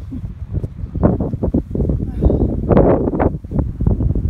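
Wind rumbling on the microphone, with irregular bursts of indistinct vocal sound, loudest a little past the middle.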